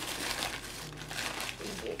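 Crinkling and rustling of a new camera's white wrapping as it is pulled open by hand, in irregular crackles.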